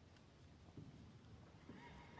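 Near silence: faint room tone of a large stone cathedral with soft scattered footsteps and shuffling.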